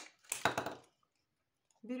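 Scissors cutting through a PET plastic bottle: a sharp click, then one noisy cut lasting about half a second.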